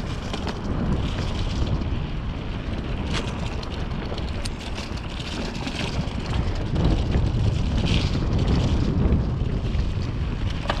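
Wind noise on the microphone of a mountain bike riding fast down a dirt trail, with tyres crackling over dry leaves and scattered clicks and rattles of the bike over bumps. It grows louder over the last few seconds as the speed picks up.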